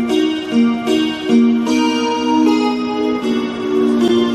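Recorded instrumental backing track for a musical-theatre song, played over a PA system: sustained keyboard notes step slowly through the introduction's melody.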